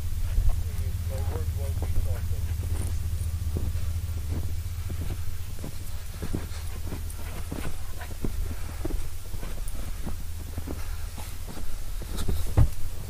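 Footsteps through deep snow, a regular run of about two steps a second, over a steady low rumble.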